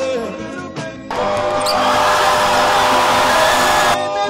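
A basketball bouncing on a hardwood gym floor as music thins out. About a second in, a loud, steady rush of crowd and gym noise starts, with a faint held tone in it, and cuts off suddenly at the end.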